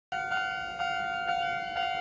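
Japanese railway level-crossing warning bell ringing, a steady electronic ding repeating about twice a second, the signal that a train is approaching.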